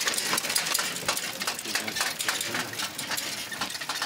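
Recumbent tandem trike being ridden along a dirt road: irregular clicking and rattling from its wheels and drivetrain over a steady rolling noise, with faint voices in the background.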